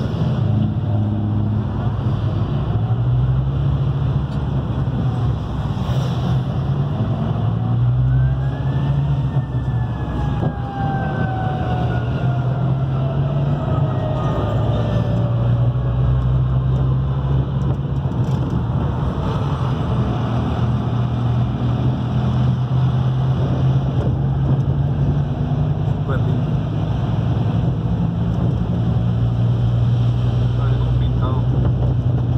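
Bus engine running with steady road and tyre noise, heard from inside the cabin while driving on a highway. A whine rises and then slowly falls in pitch in the first half.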